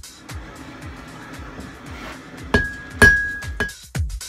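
Two hand-hammer blows on a steel anvil, about half a second apart and a little over halfway in; the second is the louder and leaves a clear, high ring. Dance music plays throughout.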